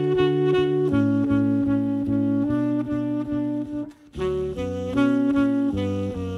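Live jazz band with saxophone playing long held notes over sustained chords, the harmony changing about once a second, with a brief break about four seconds in.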